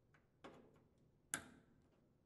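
Two faint clicks, the second one sharper and coming just over a second in: a washing machine's white plastic wire harness connector being pushed together and snapping into place.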